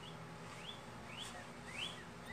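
A bird chirping: four short rising chirps, evenly repeated about twice a second.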